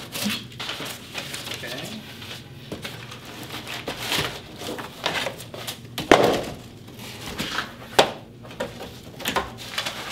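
Cardboard shipping box being opened and unpacked by hand: rustling and crinkling of cardboard and crumpled packing paper, with two sharp knocks in the second half.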